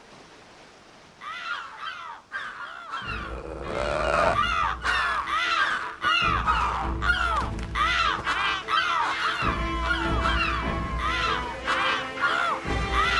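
A flock of cartoon gulls crying, many short rising-and-falling calls overlapping, starting about a second in, over background music that swells in about three seconds in.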